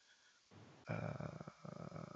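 A man's drawn-out, creaky 'uhh' of hesitation, low in level, starting about a second in.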